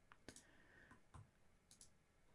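Near silence with a few faint computer-mouse clicks.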